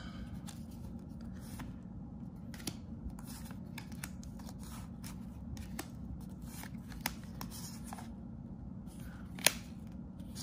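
Stack of cardboard G.I. Joe trading cards being handled and sorted by hand: cards sliding against one another in irregular soft swipes and light clicks, with one sharper snap near the end.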